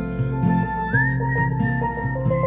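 Music: a whistled melody over acoustic guitar and bass, with a long whistled note that slides up about a second in.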